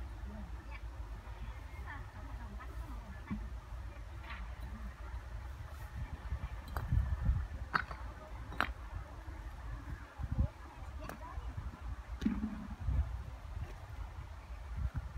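Bricks knocking together as they are handled and set down: two sharp clacks a little under a second apart, near the middle, over a steady low rumble and faint distant voices.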